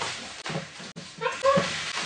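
Short voice sounds in a small room, with light handling and movement noise: brief high vocal sounds in the second half.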